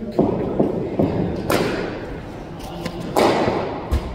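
Thuds and scuffs of a bowler's run-up and delivery stride on a synthetic cricket pitch, with a sharp knock of the cricket ball near the end as it reaches the batter.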